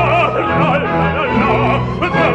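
Operatic baritone singing with a wide vibrato over an orchestra holding low sustained notes.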